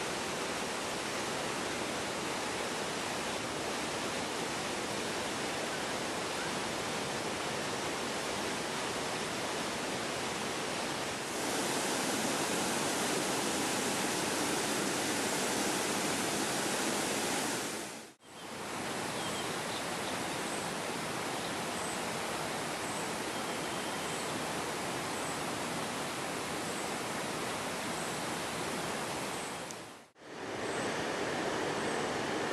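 River water rushing over boulders, then a waterfall's steady rush, louder, from about eleven seconds in. After an abrupt break a little past the middle, a steady rushing noise resumes with a faint high chirp repeating a little more than once a second.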